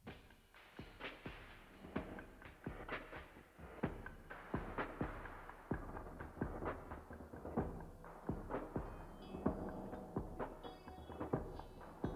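A song opening quietly on a live stage: soft, irregular percussive hits, a few a second, each ringing briefly, with a few high sustained notes joining about nine seconds in.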